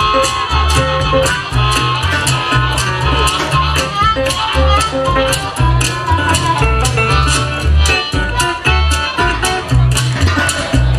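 Live blues band playing an instrumental passage: upright double bass and guitar, a washboard scraped in an even rhythm, and a harmonica played into a microphone.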